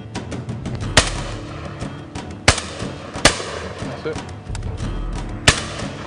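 Four shotgun shots fired at crows flying overhead, the second and third less than a second apart. Background music plays under them.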